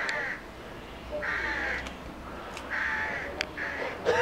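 A bird calling repeatedly: four short calls about a second apart.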